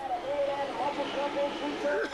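Speedway motorcycles' 500 cc single-cylinder methanol engines running hard as the riders race through a bend, with a wavering engine note.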